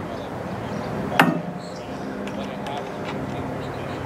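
Hand pliers straining to bend the end of a steel tomato-cage wire, with one sharp metallic click about a second in.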